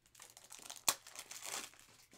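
Rustling as trading cards and their plastic sleeves are handled, with one sharp click a little under a second in.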